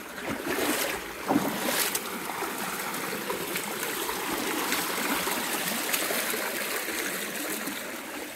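Shallow creek running over rocks and small cascades, a steady rush of water, with a few brief knocks in the first two seconds.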